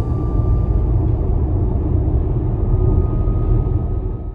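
Interior sound of an Audi e-tron 50 quattro electric SUV cruising at motorway speed. A steady low road and tyre rumble runs under a faint high whine from the electric drive, and the whine rises slightly in pitch as the car speeds up. The sound is likened to an airplane or a train.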